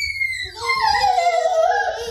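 A young child's voice holding one long, high, wavering note, sung or howled. It swoops up and back down at the start, then wavers on a steady pitch.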